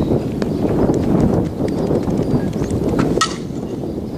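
A softball bat striking a tossed softball once about three seconds in, a sharp crack with a short ringing tail, over a steady low background noise.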